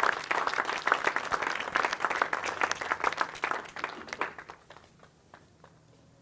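Audience applauding, a dense spread of many hands clapping that thins out and dies away about five seconds in.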